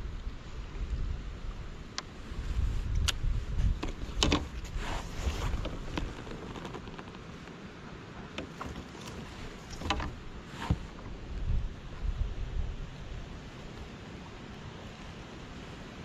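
Wind buffeting the microphone in gusts, heaviest from about one to five seconds in and again around ten to thirteen seconds, over water lapping against the kayak's hull, with a few sharp clicks and knocks from gear.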